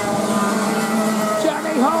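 Several racing kart engines running at speed, a steady drone that holds its pitch. A voice comes in near the end.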